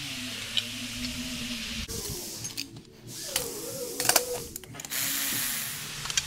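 Bolts being moved on a wheel fitment tool by hand, with a few sharp metallic clicks in the middle over a steady low hum.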